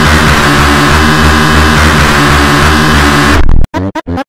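Electronic dance track: a loud, sustained wash of harsh synthesizer noise over steady low tones, cutting off suddenly about three and a half seconds in, then a few short beats.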